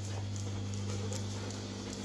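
A Rottweiler walking on a marble floor, its claws making faint scattered clicks, over a steady low hum.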